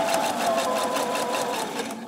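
Viking Opal 650 sewing machine running steadily under the foot control, sewing a straight stitch with a regular stroke rhythm and a steady motor whine. It slows and stops near the end.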